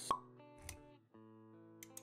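Intro music with sound effects: a sharp pop just after the start, a low thud a little later, then soft held notes with light clicks near the end.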